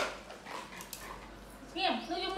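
A young pet macaque giving a high-pitched call near the end, after a short knock at the start.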